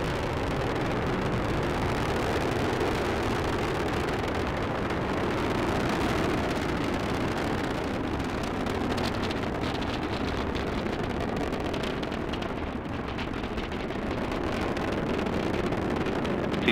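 Rumble of the Falcon 9 first stage's nine Merlin 1D engines during ascent, heard from kilometres away: a steady, noisy rumble with faint crackling from about halfway through.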